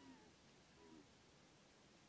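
Near silence: room tone, with a faint falling call at the very start and another brief faint call about a second in.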